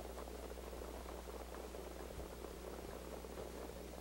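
Faint steady low hum with light background hiss, no distinct events.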